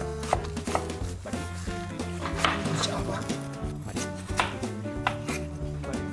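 Knife chopping fruit on a cutting board: a series of uneven knocks as the blade strikes the board.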